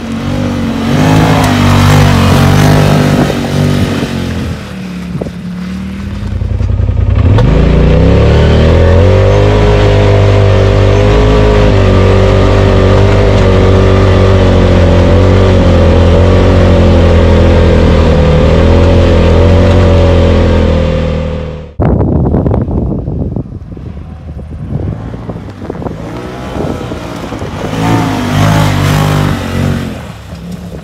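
2021 Polaris RZR Pro XP's turbocharged 925 cc twin-cylinder engine under throttle in low range on sand. Its pitch rises and falls early on, climbs about six seconds in, and then holds one steady high note for around fourteen seconds. It drops off abruptly and comes back up near the end.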